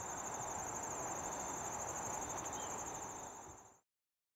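Crickets trilling steadily in a high-pitched, rapidly pulsing chorus over a low, even outdoor background hum, fading out shortly before the end.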